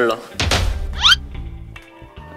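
A deep thud about half a second in, with a low rumble trailing after it, then a short high rising squeal about a second in, over background music.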